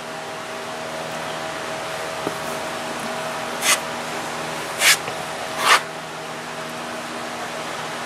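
Three short scrapes of a plastic spreader drawing Bondo body filler across a car's metal quarter panel, about midway, over a steady mechanical hum.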